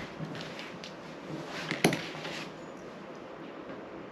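Light handling knocks and rustles on a Garrard RC121 record changer's tonearm and deck, with one sharp click a little under two seconds in, then only faint room noise.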